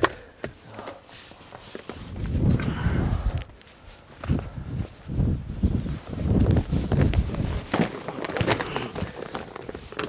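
Bags being shoved and packed onto a car's back seat: irregular thuds, knocks and fabric rustling at an uneven pace.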